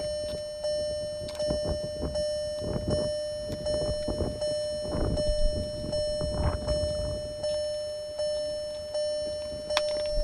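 A car's open-door warning chime ringing over and over, about one chime every three-quarters of a second, with footsteps in high heels on gravel.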